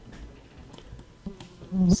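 Low background hiss and hum from the recording microphone, with a few faint clicks. A man's voice starts near the end.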